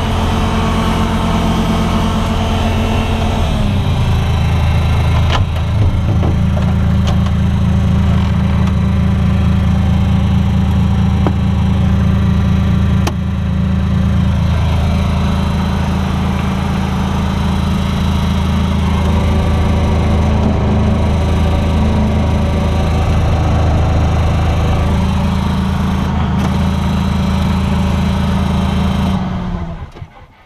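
Bobcat 443 skid-steer loader's engine running steadily, heard from the operator's cab, its speed dropping slightly about three and a half seconds in, with a few sharp clicks. The engine shuts off just before the end.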